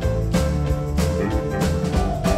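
Live rock band playing an instrumental passage: drums keeping a steady beat of about three strikes a second under electric bass, electric guitar and keyboard.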